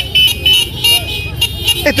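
Street noise of a night-time motorcycle and car caravan: engines running low underneath short, high horn toots.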